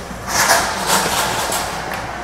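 Books being shifted and lifted out of a plastic bin by hand: a burst of rustling and scraping handling noise that starts a moment in and fades near the end.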